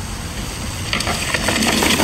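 Mountain bike tyres rolling over a dirt forest trail, with a few clicks and rattles from the bike, growing louder in the second half as the bike comes close.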